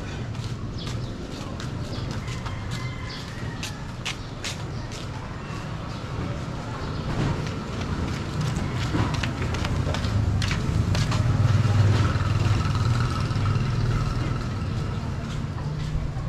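Urban neighbourhood ambience: a motor vehicle's engine rumble grows louder to a peak about twelve seconds in, then eases off. Many short sharp clicks and taps come through in the first half.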